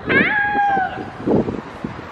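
A young girl imitating a cat's meow: one drawn-out high 'miaow', rising briefly and then held with a slight fall, lasting under a second.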